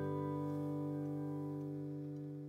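The last held chord of a soft lullaby backing track ringing out and slowly fading away.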